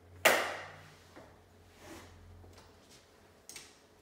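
A sharp, loud knock of an aluminium walker against the tile floor, ringing briefly, as a person grips it to stand up; a lighter knock follows near the end.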